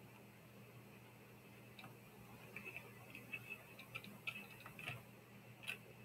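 Faint, irregular ticks and scratches of a stylus writing on a pen tablet, starting about two seconds in, against near silence.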